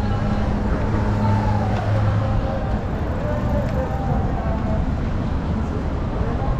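Road traffic on a busy city street: motor vehicles running past, with a steady low engine hum that fades about two seconds in. Passers-by talk faintly in the background.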